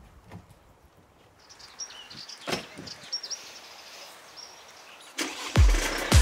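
Outdoor ambience: birds chirping over a steady background noise, with a single sharp click about two and a half seconds in. Near the end, music with a heavy kick-drum beat comes in.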